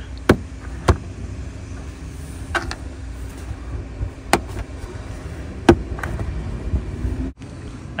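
Plastic push-type retaining clips on an engine-bay upper cover clicking as their centres are pressed down to release them: five sharp clicks spaced irregularly over a few seconds, over a steady low rumble.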